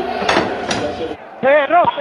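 Dishes and cutlery clinking, with two sharp clinks, over background talk; the sound cuts off abruptly, and about a second and a half in a loud voice starts shouting "Bianca" over and over.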